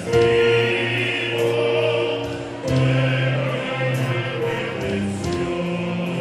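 Mixed choir of male and female voices singing held chords with a small instrumental ensemble. The harmony moves to a new chord about two and a half seconds in.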